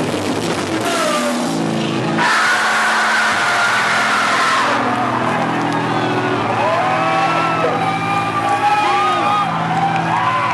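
A live punk rock song ending: a few last drum and guitar hits, then guitar amplifiers left droning while the crowd cheers and yells.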